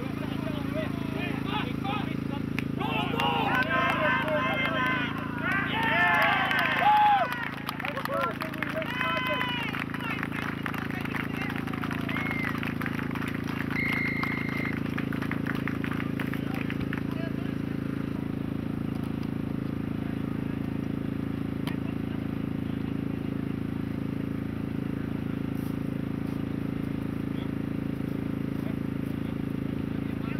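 Several voices shouting and cheering on an outdoor rugby pitch for several seconds just after a try, then scattered fainter calls. A brief steady high tone near the middle, over a steady low background hum.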